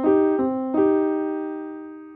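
Nord Stage 4 stage keyboard's piano sound with its Dynamic Compression set to 3: three chords struck about a third of a second apart, the last one held and fading away. The compression evens out the dynamics and makes the playing sound smooth.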